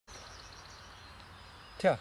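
Quiet outdoor woodland background with faint distant birdsong, then a man says a single word near the end.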